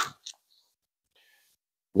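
Near silence, with one faint click shortly after a man's word trails off; his speech resumes right at the end.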